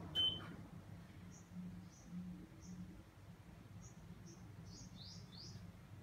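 Saijo Denki split-type air conditioner's indoor unit gives a single short beep as it is switched off, over a faint low fan hum. Small birds chirp repeatedly in the background, short rising chirps about every half second.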